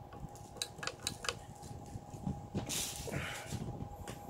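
Metal footswitches on a Mooer Black Truck multi-effects pedal being pressed by hand, giving a few sharp mechanical clicks in the first second and a half. A short rustle follows near the end.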